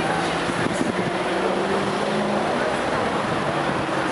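Steady road traffic noise: a continuous wash of car engines and tyres, with faint low engine hums in it.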